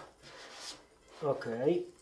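Gloved hand rubbing a strip of paper masking tape down onto a car's painted panel: a brief faint rubbing sound after a small click, within the first second.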